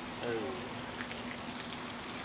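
A single short "oh" from a voice, then a steady outdoor hiss with a faint low hum and a couple of faint ticks.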